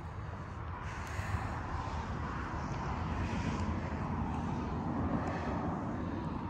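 Steady low rumble of a distant engine, growing slightly louder over the first couple of seconds and then holding.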